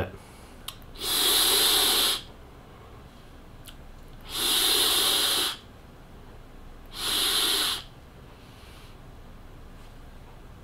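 A person taking a drag on a Horizon Tech Arctic Turbo sub-ohm vape tank, with its fan removed, and breathing the vapour out: three airy rushes of breath, each about a second long, a few seconds apart.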